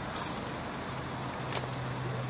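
Steady low hum of an idling motor vehicle, with a short crackle just after the start and a sharp click about one and a half seconds in.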